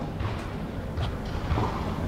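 Steady low rumble of room noise with a few soft thuds and shuffles as a foam exercise mat is laid on the floor and a person gets down onto it.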